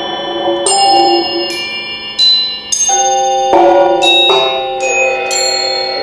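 Percussion quartet playing bell-like metallic mallet percussion: about eight single struck notes, each ringing on and overlapping the next.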